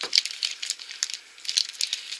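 Crinkling of a small plastic blind-bag packet being handled and opened, a run of quick sharp crackles.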